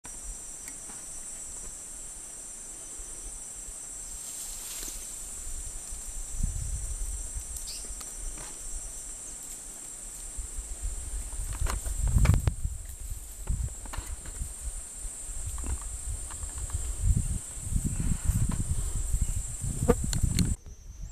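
Insects droning steadily in an even, high-pitched drone, with low thumps and rumbles on the microphone from about six seconds in, loudest around twelve seconds.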